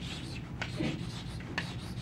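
Chalk scratching on a blackboard as a word is written out in cursive, in a run of continuous strokes.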